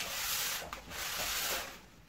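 Bubble wrap and a clear plastic cover around a potted plant rustling and rubbing under the hands, in two long rubs with a short break between.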